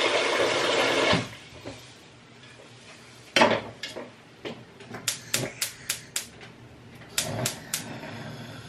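Tap water running, cut off about a second in; then a metal cooking pot knocks down onto a gas hob's grate, followed by two runs of rapid clicks, about four a second, from the hob's spark igniter as the gas burner is lit.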